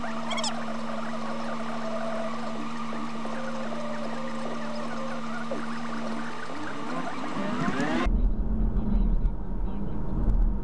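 Dashcam audio fast-forwarded six times: a steady hum under garbled, squeaky, warbling chatter, with rising glides near the end. About 8 seconds in it cuts abruptly to a low, steady car-cabin road rumble at normal speed.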